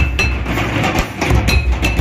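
Santal festival dance drumming: a tamak (large kettle drum) and madal drums beaten in a driving rhythm with deep booming strokes, and short high ringing notes over them.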